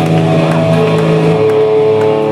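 Distorted electric guitar and bass letting a chord ring out through the amplifiers, held steady, with a single held tone, like feedback, coming in about a second in.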